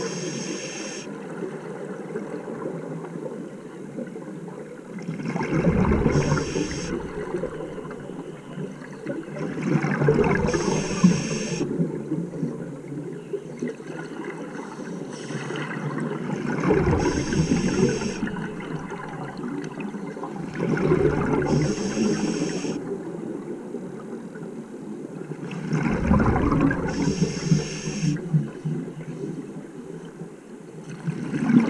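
Scuba regulator breathing underwater: the hiss of each inhalation and the gurgle of exhaled bubbles, repeating about every five seconds.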